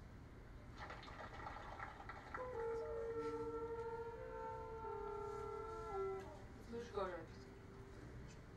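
Trembitas, long wooden Carpathian horns, sounding long held notes together, starting about two seconds in and stepping between a few pitches for about four seconds, with a falling glide near the end. Heard as video playback through a hall's loudspeakers.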